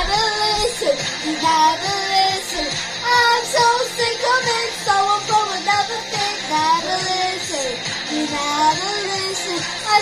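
A pop song with a high sung melody over backing music.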